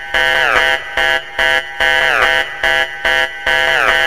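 Hardstyle track in a kickless break: a buzzy, harsh synth lead plays short chopped stabs, about two or three a second, several of them sliding down in pitch.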